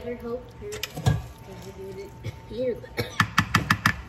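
Wooden spoon working a chicken pie filling in an aluminium pan, ending in a quick run of about eight light taps of the spoon against the pan, nearly one second long.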